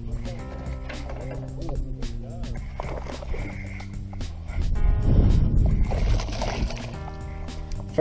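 Background music with sustained chords. About five seconds in, a louder rush of noise lasts a second or two.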